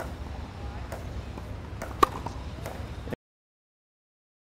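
A tennis ball struck once by a racquet on a serve, a single sharp pock about two seconds in, over a steady low outdoor rumble. The sound cuts off suddenly about a second later.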